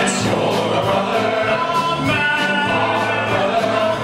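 Male chorus singing a show tune, with a steady beat under the voices.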